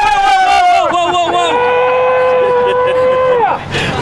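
Men yelling in celebration: a long high held shout that trails off about a second in, then a lower drawn-out yell that ends near the end, with other voices overlapping.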